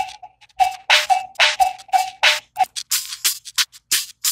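One layer of a drum loop, separated out by Accusonus Regroover Pro, played back on its own: crisp hits about three a second, each carrying a ringing middle tone. About three seconds in, playback switches to another separated layer of fast, light ticks, about six a second.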